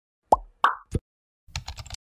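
Three quick plop sound effects, each falling in pitch, about a third of a second apart, followed near the end by a rapid run of keyboard-typing clicks as text is entered into a search bar.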